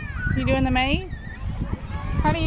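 A high-pitched human voice calling out without words: one drawn-out sound starting about a third of a second in that holds its pitch and then rises at its end, over a steady low rumble.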